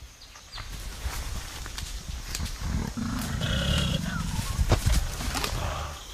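Mountain gorilla's low rumbling vocalization, swelling about three seconds in, with scattered sharp cracks throughout.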